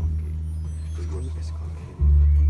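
A steady low bass drone held by the live band, with faint voices over it.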